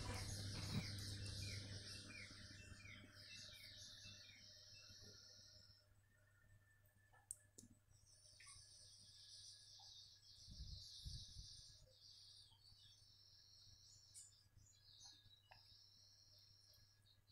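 Near silence: faint background room tone with a low steady hum and faint high-pitched chirping and trilling coming and going, plus a few faint clicks.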